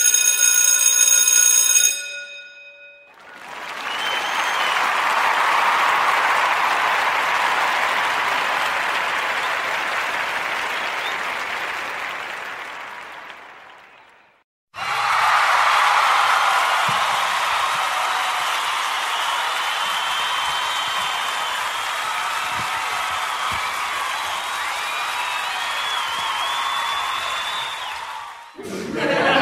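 A short ringing tone with many overtones lasts about two seconds. Then comes a stretch of applause that swells and fades out by about the middle. After a brief break, a second burst of crowd applause starts abruptly and runs on.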